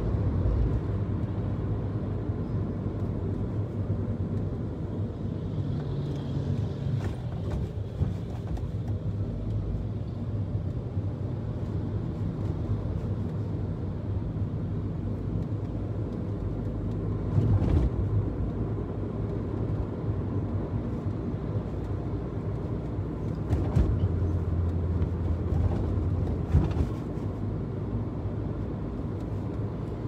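Car driving along a city street: a steady low engine drone and road rumble, with the engine note swelling a few times and a few brief bumps.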